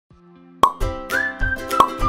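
Intro jingle music that starts faintly, then a sharp pop about half a second in as a bass beat and short pitched blips come in; another pop near the end.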